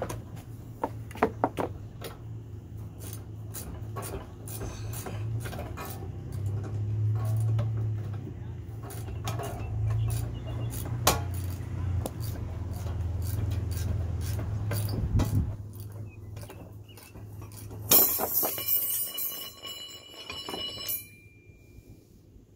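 Steel steering clutch pack of an Allis-Chalmers HD5G crawler being dismantled: a run of small metallic clicks and clinks as tools work on it. About eighteen seconds in comes a loud metallic clatter as the parts come apart, and the steel rings for a few seconds.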